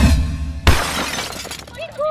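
Music cut into by a sudden loud crash of glass shattering about two-thirds of a second in, its shards trailing off over the next second.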